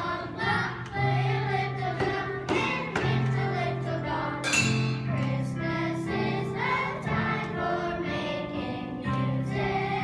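Young children's choir singing a Christmas song together over an accompaniment with held low notes, punctuated by regular hits on a drum and other hand percussion.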